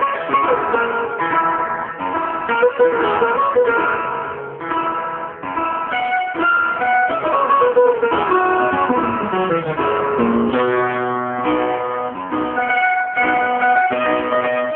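Maltese għana guitar prejjem: plucked guitar melody with rapid note runs over a strummed accompaniment and no voice. A long descending run falls through the middle, followed by a few held notes.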